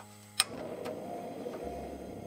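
Gas stove burner being lit: a sharp igniter click about half a second in, then the gas catching and the flame burning with a steady rushing hiss.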